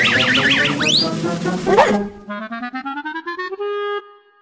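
Cartoon soundtrack music with comic sound effects: a fast warbling, wobbling tone and a quick rising whistle in the first second. About two seconds in, the music drops out and a single tone slides slowly upward in pitch, then holds steady near the end.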